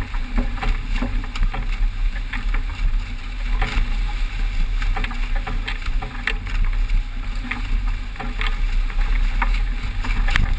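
Strong wind buffeting the microphone with a heavy, steady rumble, over the rush of water along the hull of a sailing yacht running fast in rough sea. Scattered sharp clicks and knocks sound throughout.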